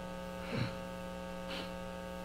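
Steady electrical mains hum in a sound system, a stack of even, unchanging tones, with two faint brief sounds about half a second and a second and a half in.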